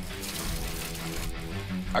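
Background music with a steady low note, over a hiss of hot cooking water poured from a steel saucepan through a colander in the first second or so.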